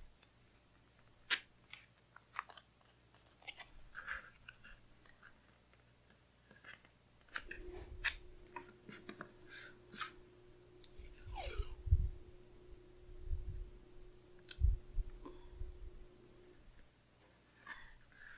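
Faint, scattered crackles and clicks of washi tape being pulled off its roll and pressed onto planner paper, with paper handling and a few soft thumps of hands on the desk in the second half. A faint steady hum runs under the middle part.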